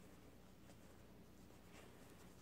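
Near silence: faint rustling of soft fabric as a fluffy boot is worked onto a doll's foot, with a slightly louder rustle near the end.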